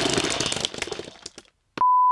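A harsh, noisy gush that fades away over about a second and a half, then after a brief gap a click and a steady 1 kHz test tone, the tone that goes with television colour bars, starting near the end.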